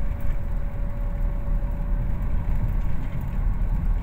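Inside a moving car's cabin: a steady low rumble of engine and tyres on a paved road.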